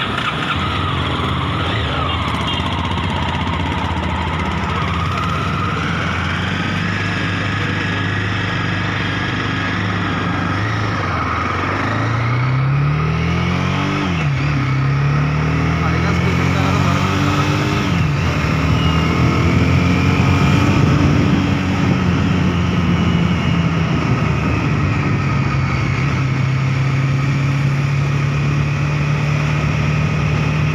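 Mahindra Mojo 300's single-cylinder engine, heard from the rider's seat while riding: it runs steadily, climbs in revs twice with a drop at each upshift around the middle, then settles into a steady cruise.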